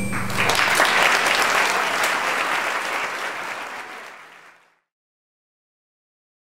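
Audience applauding as the final note of a live song ends; the applause fades out about four and a half seconds in.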